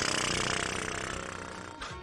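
A rapid rattling noise, loud at first and fading out over about two seconds.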